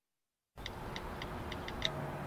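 Silence for about half a second, then a faint background with half a dozen light, quick ticks: smartphone on-screen keyboard clicks as a text message is typed.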